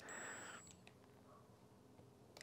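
Near silence: workshop room tone, with a faint short sound and a thin high tone in the first half second and a faint click just under a second in.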